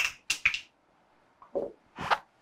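Marker pen squeaking on a whiteboard in short, quick strokes while a word is written: three strokes close together in the first half second, then a softer, lower stroke about a second and a half in.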